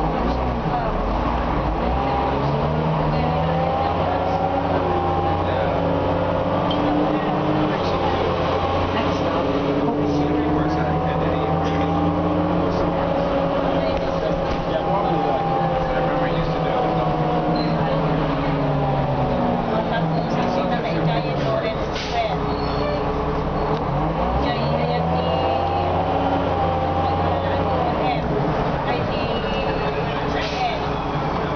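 Cummins M11 inline-six diesel of an Orion V city bus, heard from inside the cabin, working through its Allison automatic transmission. The engine pitch climbs, levels and falls several times as the bus speeds up and slows in traffic, easing off around twenty seconds in and climbing again near the end.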